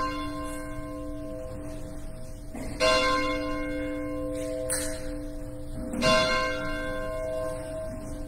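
A bell struck three times, about three seconds apart. Each stroke rings on in several sustained tones until the next one.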